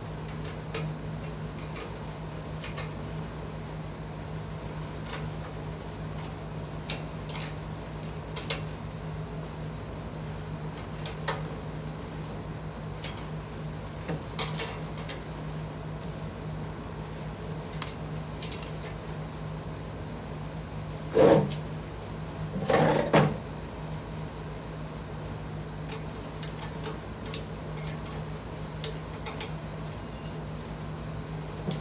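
Scattered metal clicks and taps of an open-ended wrench and caster bolts as swivel casters are tightened onto a steel tool-cart base. A louder metal clatter comes twice, about two-thirds of the way through, over a steady low hum.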